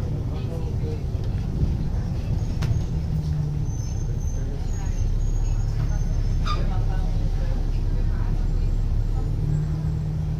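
Inside an Alexander Dennis Enviro500 double-decker bus on the move: the engine's steady low drone under road noise. The engine note shifts a few seconds in and again near the end.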